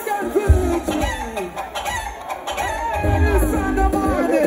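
Concert crowd shouting and whooping in many overlapping high voices, over a deep bass from the PA that comes in about half a second in and swells again near the end.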